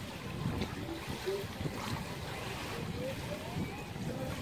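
Pool water sloshing and lapping as a child wades and moves her arms through it, with faint voices in the background.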